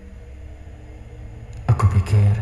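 Low, steady drone of a dark background music track, then a sudden heavy low hit about a second and a half in.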